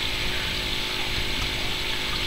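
A steady mechanical hum with a faint whirr, unchanging throughout, with a few thin steady tones in it.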